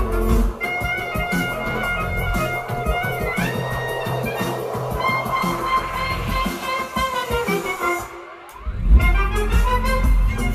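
Live electronic dance music with violin, woodwind and trumpet playing a held melody. The bass beat drops out about half a second in, a rising glide comes near the middle, and after a brief gap the beat comes back in near the end.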